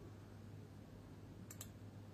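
Near silence with a steady low hum, broken by two quick faint clicks about one and a half seconds in.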